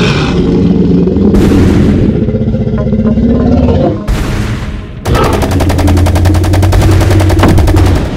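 Film-style sound effects: a tyrannosaur growling and roaring for the first half, then rapid automatic gunfire, about ten shots a second, starting about five seconds in and running on steadily.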